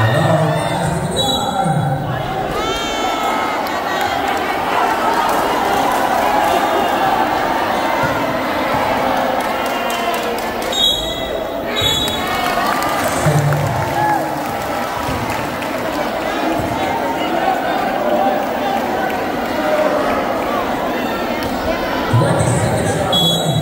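Basketball game sounds in a packed gymnasium: a basketball bouncing on the court over steady crowd noise and voices.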